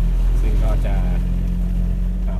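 Mercedes-Benz tour bus engine running steadily at cruising speed, heard from the driver's cab as a loud, even low drone.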